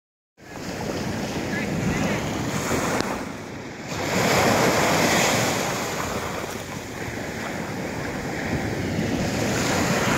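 Atlantic surf breaking and washing up the sand, with wind buffeting the microphone. The wash swells louder about four seconds in.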